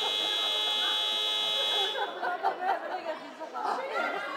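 Sports-hall scoreboard buzzer sounding one steady, high tone for about two seconds, then cutting off, followed by scattered voices around the hall.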